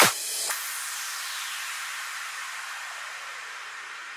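End of an electronic dance track: a final kick-drum hit at the start, then a hissing white-noise sweep that falls in pitch and slowly fades out.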